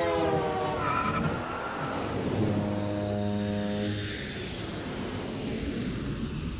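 Car sound effect: a car engine passing by, its note falling in pitch in the first second. About two and a half seconds in it holds a steady engine note for about a second and a half, then gives way to a rushing hiss.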